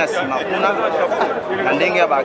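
Several people talking over one another close to the microphone, a loud, unbroken babble of voices.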